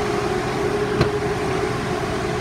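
Steady drone of a 2015 Ford F-550 bus's 6.7-litre V8 diesel idling, with its air-conditioning running. A single sharp click about a second in as the driver's door latch opens.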